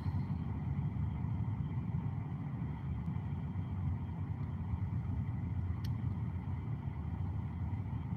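Steady low rumble of a car's engine and tyres heard inside the cabin while driving slowly in traffic, with a single brief click about six seconds in.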